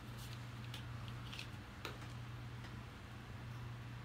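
A few faint, scattered clicks and crackles of thin plastic blister packaging being handled, over a steady low hum.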